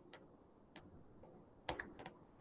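Faint clicks of a stylus tapping on a tablet's glass screen during handwriting: a few scattered taps, the loudest two close together near the end.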